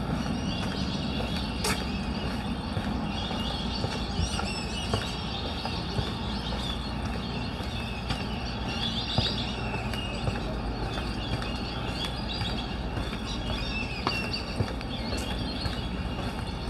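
Outdoor ambience: a steady low rumble of traffic with birds chirping faintly over it.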